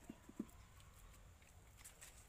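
Near silence, with three quick soft pats in the first half second, the last the loudest, as hands press and smooth wet mud onto a clay stove.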